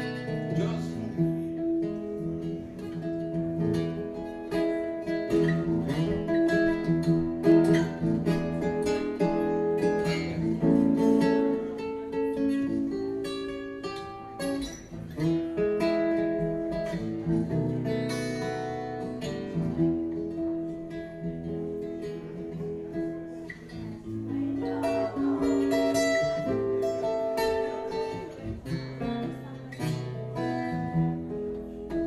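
Steel-string acoustic guitar strummed steadily in an instrumental passage of a song, chords ringing between the strokes.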